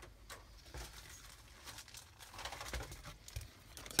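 Faint rustling and crinkling of a clear plastic bag holding a plastic model-kit sprue as it is handled, with a few light clicks, busiest in the second half.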